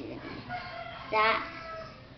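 A rooster crowing once: a long pitched call, loudest about a second in, with a held tail.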